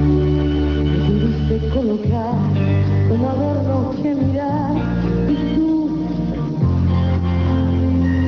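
Live pop band music: a steady bass line under held chords, with a wavering lead melody through the middle.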